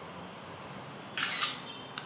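An HTC Desire 516 smartphone's camera shutter sound, played through the phone's small speaker as a photo is taken: one short click-like burst about a second in.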